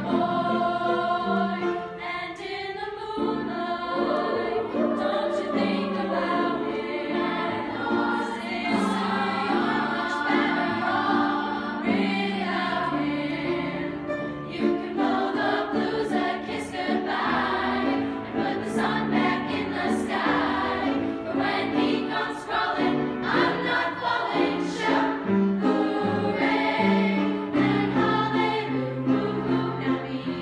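A choir of young women singing a song with words.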